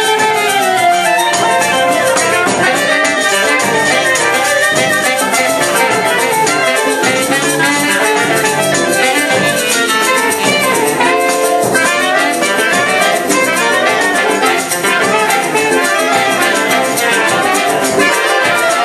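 Choro wind ensemble playing live, with clarinets, saxophones and trumpet playing the tune together.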